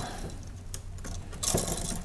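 Electrical wires and metal-strapped wall switches being handled and pushed around in a plastic junction box: light rustling and small clicks, with a louder scratchy rustle about one and a half seconds in.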